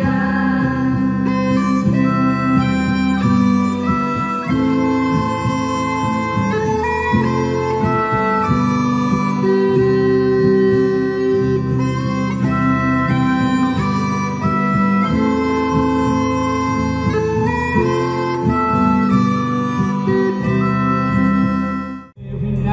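Live ensemble music: two violins play a sustained melody over acoustic guitar accompaniment.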